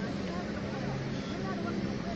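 Jet aircraft engines running as the plane makes its takeoff run, heard across the airfield as a steady low drone, with voices of onlookers mixed in.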